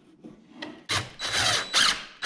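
Wooden frame boards scraping and rubbing against each other and the plywood bench top as a glued rail is pushed into place, in a few short strokes starting about a second in.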